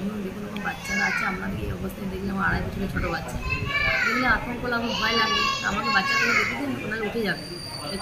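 A woman talking, with higher-pitched children's voices mixed in behind her.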